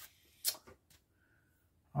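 A light, sharp click about half a second in and a softer one just after, as a small plastic-bagged model part is set down on a cutting mat. Otherwise quiet room tone.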